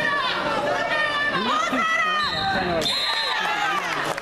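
Spectators and coaches yelling over one another during a wrestling bout, several raised voices at once, with a brief high steady tone, like a whistle, a little over two seconds in.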